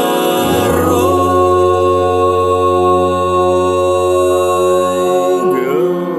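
Vocal music: sung voices hold one long chord over a low steady drone, at the close of the song's refrain. The drone drops out about five seconds in, and a wavering pitch glide follows near the end.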